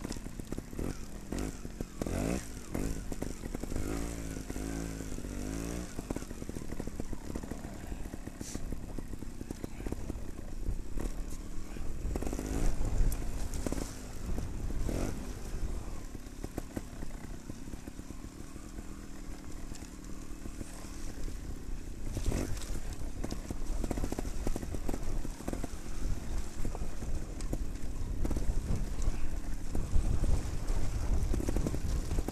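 Trials motorcycle engine heard from on board, running at low revs and rising and falling in pitch as the rider works the throttle down a steep, rutted slope, with scattered knocks from the bike over the bumps.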